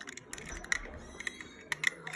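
Hands handling a diecast toy car two-pack and its plastic packaging, making a run of light, irregular clicks and taps.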